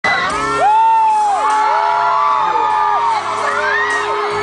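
Live pop music from a concert stage, played loud, with audience fans screaming over it in long, high, overlapping shrieks.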